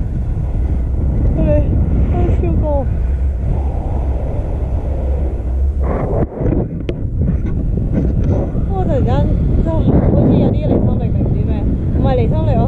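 Wind from a paraglider's flight buffeting the camera's microphone, a loud low rumble that drops out sharply about six seconds in and then builds again. Short spoken exclamations break through it now and then.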